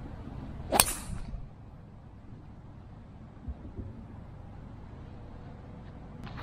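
A driver striking an RZN HS Tour golf ball off the tee: a single sharp crack of the club face on the ball a little under a second in, a strike the golfer calls very solid.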